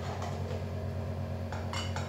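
A metal knife clicking and scraping against a frying pan as a pat of butter is spread around it, the clicks coming in the last half-second or so. A steady low hum runs underneath.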